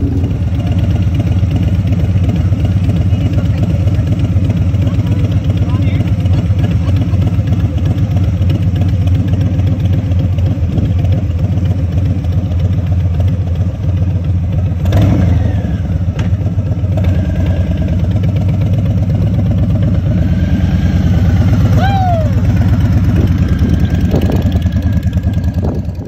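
Harley-Davidson V-twin motorcycle engine running at low speed as the bike rides off, a steady low rumble, with a few short chirps over it past the middle.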